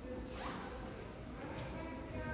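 A short rising zip-like swish about half a second in, over a steady low room murmur.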